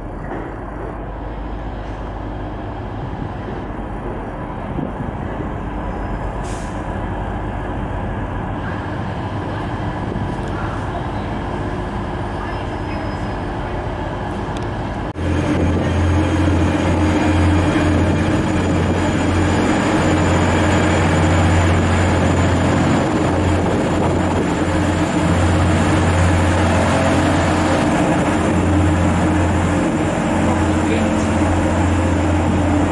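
Class 185 diesel multiple unit drawing into the platform, a steady rumble that slowly grows louder. About halfway it cuts suddenly to the loud, steady drone of a Class 185's underfloor diesel engines running close by under the station roof, a deep hum with higher tones on top.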